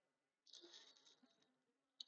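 Near silence between spoken phrases, with a very faint, brief high-pitched hiss from about half a second to just over a second in.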